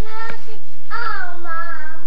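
A young child singing: a short note, then about a second in a longer note that slides down in pitch.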